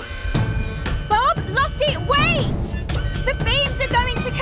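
Cartoon soundtrack music with short, wordless vocal sounds that rise and fall in pitch, over a steady low rumble.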